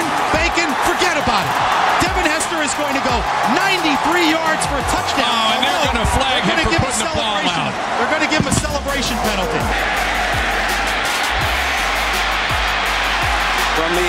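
Excited shouting voices and crowd noise from a football game broadcast, laid over background music with a beat. A steady deep bass comes in about two-thirds of the way through.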